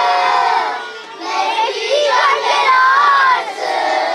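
Children's choir singing an ilahi loudly in unison, many young voices together, with a short drop a little after the first second.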